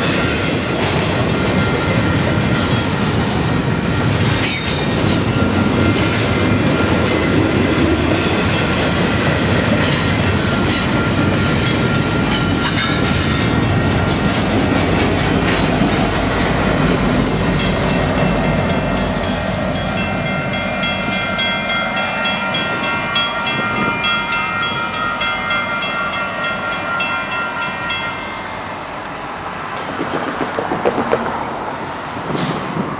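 Double-stack container well cars rolling past close by: a steady rumble of wheels on rail with repeated clicks as wheels cross rail joints. About two-thirds of the way through, a high, steady wheel squeal comes in while the rumble eases a little.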